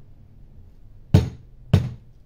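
Two sharp knocks about half a second apart: a small plastic bottle of jewel glue rapped down on a tabletop, knocked to get glue out of a bottle that won't dispense.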